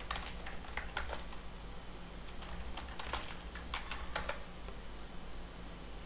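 Typing on a computer keyboard: sharp key clicks in two quick spells, the second ending about two-thirds of the way through.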